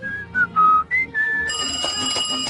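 A short tune of five quick whistled notes, stepping up and down. About a second and a half in, a steady electronic ringing tone starts and holds.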